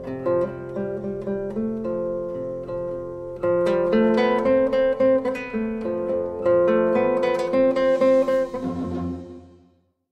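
Background music of plucked strings with quick, picked notes, growing fuller and louder about three and a half seconds in, then fading out near the end.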